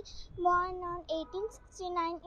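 A young girl's voice reciting in a high, even, sing-song tone, holding each syllable at a steady pitch.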